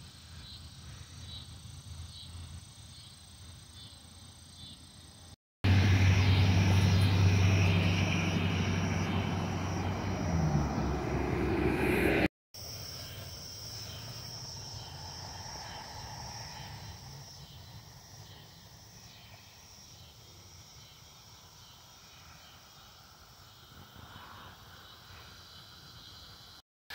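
Faint evening outdoor ambience with insects chirring, broken in the middle by a much louder stretch of engine drone with a low hum. The drone lasts about seven seconds and eases slightly, and then the faint ambience returns. The sound drops out for a moment at each change.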